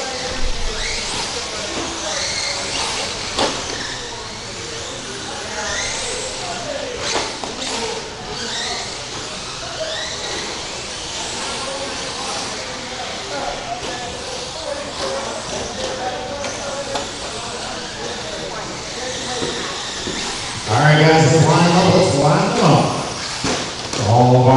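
Echoing indoor hall noise with a murmur of distant voices and faint rising and falling whines of electric RC trucks on the track; a man's voice starts loudly about three seconds before the end.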